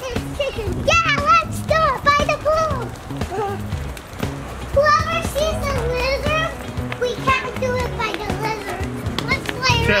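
Young children's voices, high and excited, over background music with a repeating bass line.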